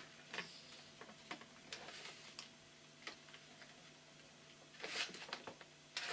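Light clicks and taps from a small lipstick holder being handled and turned over in the hands. A few are spread out, and a closer cluster comes near the end.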